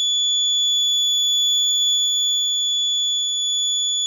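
Piezo alarm buzzer on an Arduino accident-detection board sounding one steady, unbroken high-pitched tone: the accident alert, set off after the accelerometer on the toy car sensed a tilt to the left.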